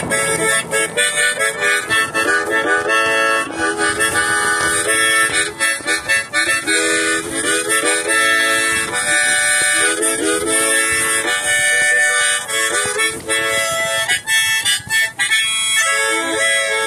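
Music on a reed instrument: a continuous melody of quickly changing notes and chords, with a few short dips between phrases.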